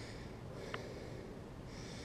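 Quiet, close breathing of a man, with a faint breath at the start and another near the end, over a low steady background rumble; one small click about three quarters of a second in.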